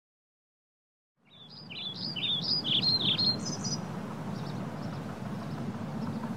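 Outdoor ambience fades in about a second in: a bird sings a quick run of high, rising-and-falling chirps for a couple of seconds, then fainter chirps, over a steady low background noise.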